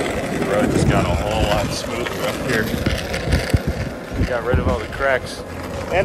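Longboard wheels rolling on asphalt: a steady low rumble with a few short knocks near the middle, under a man talking.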